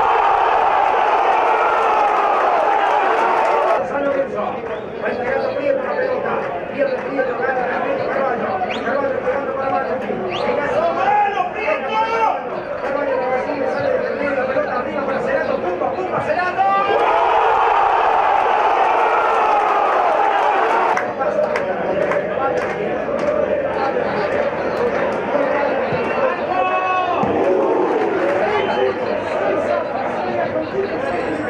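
Excited Spanish-language football commentary by a man, filling the whole stretch. It gets louder and more sustained near the start and again from about 17 seconds in, a drawn-out goal call.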